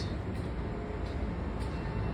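Steady low rumble of a twelve-car commuter train on the tracks below, heard from an enclosed footbridge over the station.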